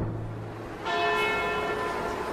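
Accompaniment music in which a bell strikes: a held low note fades out, then about a second in a bell is struck and rings on with a cluster of steady tones.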